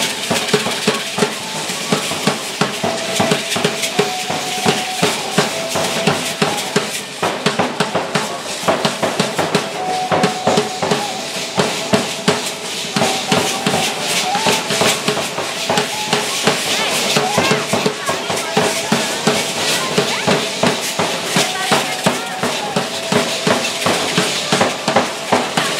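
Drum of a matachines dance beating a steady, fast rhythm, with rattling percussion and a faint melody line over it.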